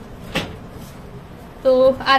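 A wooden wardrobe door being shut, giving a single sharp knock a little way in.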